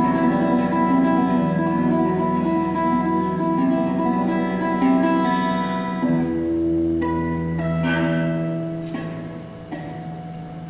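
21-string harpguitar played solo: plucked chords ring over low sustained bass strings. The notes change about six seconds in, and the sound fades near the end as the strings are left to ring.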